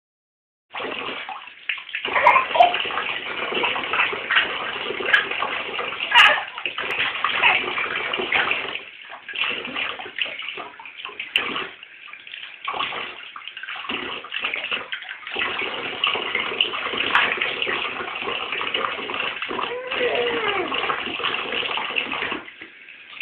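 Bathtub tap running, a thin stream pouring from a duck-shaped spout cover into the tub and splattering against a baby's hand as it plays in the water. The rushing, splashing noise is steady, dipping briefly now and then.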